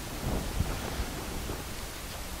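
Low rumbling handling noise with a few soft thumps as someone moves close to the microphone, clothing brushing past it.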